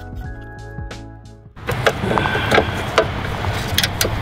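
Background music that ends suddenly about a second and a half in, then the steady hiss of heavy rain with sharp metallic clicks from a spanner working a mounting bolt on a car's oil cooler.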